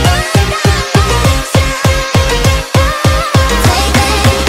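Sped-up nightcore edit of an electronic drum and bass track: deep bass pulses about four a second under a high synth melody.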